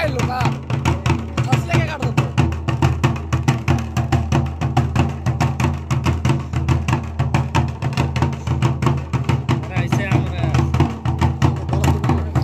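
Large double-headed barrel drums beaten by hand in a fast, steady rhythm of about five or six strokes a second, with voices calling over them at the start and again near the end.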